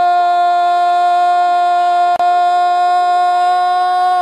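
Brazilian TV football commentator's drawn-out "Gol!" shout, one vowel held loudly at a steady high pitch for the whole stretch.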